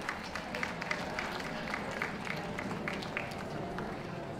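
Scattered applause from a spectator crowd: sharp, separate hand claps at an uneven pace, several a second.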